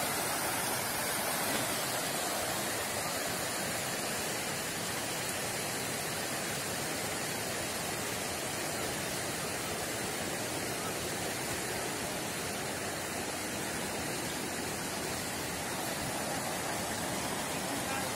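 Fast water rushing down a concrete channel and over the falls: a steady, even rush with no breaks.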